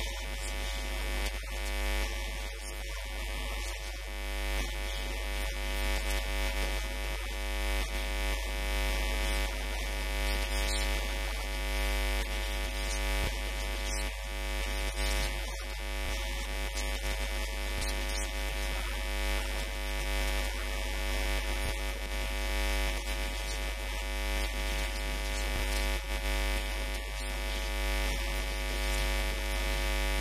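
Steady electrical hum and buzz from interference in the microphone: a strong low drone with many even overtones above it that stays constant throughout.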